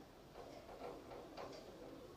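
Felt-tip marker writing on a whiteboard: a few faint, short scratching strokes at irregular intervals over low room hum.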